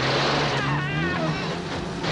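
Motorcycle engine running as the bike rides past, with a wavering high tone laid over it for about half a second in the middle.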